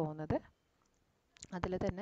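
A woman's voice speaking, then a pause of about a second, then speech again with a few sharp clicks mixed in.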